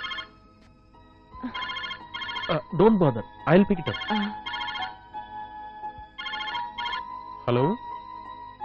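Mobile phone ringing: a trilling electronic ring in pairs of short bursts, each pair coming about every two and a half seconds.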